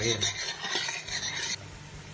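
A metal spoon stirring and scraping onion and spices frying in oil in a stainless steel pot. The sound stops abruptly about one and a half seconds in.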